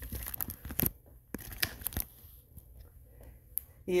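Irregular crunching and rustling clicks, thickest in the first two seconds and then sparse, with a single sharp click near the end.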